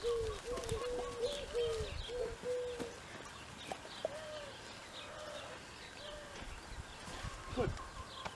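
Birds calling: a quick run of short, arched, mid-pitched notes for the first three seconds, then slower single notes, with faint higher chirps over the top.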